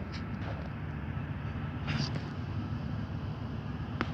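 A truck engine running with a steady low rumble, and a brief high-pitched sound about two seconds in.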